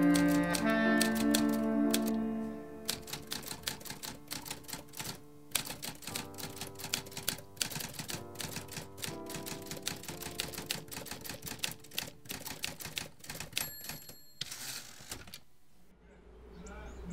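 Manual typewriter keys clacking in quick, irregular runs over soft sustained music; a louder musical passage fades away in the first few seconds. Near the end there is a brief ringing tone followed by a short rasp.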